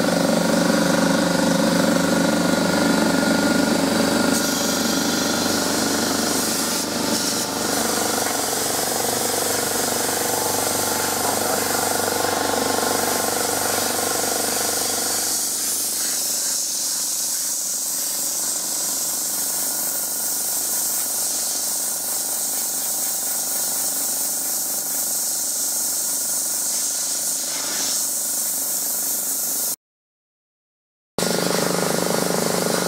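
Sandblasting: a blast gun fed from a pressure pot hissing steadily as sand and compressed air stream onto a metal tractor hood. A machine's running hum underneath, probably the compressor, is strong in the first half and drops away about halfway through.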